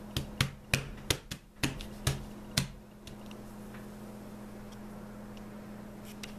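A hand patting and pressing duck tape flat against a cutting mat: about six sharp taps, roughly half a second apart, in the first few seconds, then a steady low hum.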